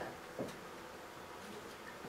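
Quiet room tone with a faint steady hum, and one brief short sound about half a second in.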